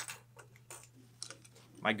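Plastic darter plugs set down on and picked up from a wooden tabletop: one sharp click at the start, then a few fainter clicks.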